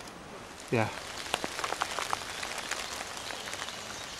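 Raindrops falling irregularly onto leaves in woodland, a scatter of sharp little taps over a steady hiss, starting about a second in.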